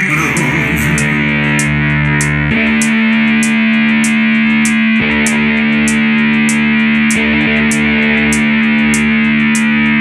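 Amplified three-string cigar box guitar ending a blues song with long ringing notes that change about every two and a half seconds, over a light steady ticking beat.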